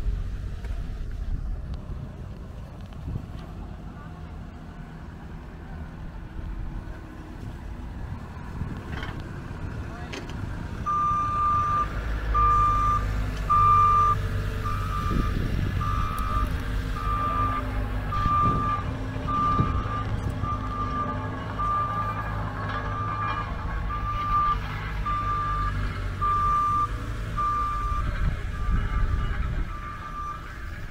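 A vehicle's back-up alarm beeping as it reverses: a single high beep about once a second, starting about ten seconds in, over a low engine rumble.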